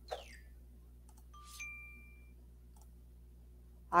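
Electronic sound effects from an on-screen flashcard game: a short falling swoosh near the start, a few mouse clicks, and a two-note chime, low then high, as a card is eliminated from the board.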